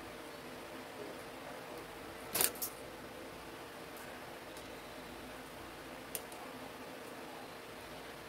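Small flat iron clicking shut on hair: a sharp double click about two and a half seconds in and a single click about six seconds in, over a faint steady hum.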